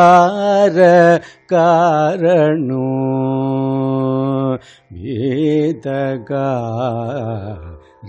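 A male voice singing a Sanskrit verse in Carnatic style, in raga Sahana, with wavering ornaments on the notes. There is a long steady held note in the middle and short breaks for breath about one and a half and four and a half seconds in.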